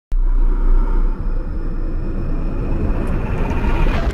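Cinematic logo-intro sound effect: a deep rumble that starts abruptly and swells, growing brighter toward a sudden hit at the very end.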